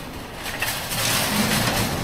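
A wire shopping cart being pushed, its wheels rolling and its basket rattling, getting louder about a second in.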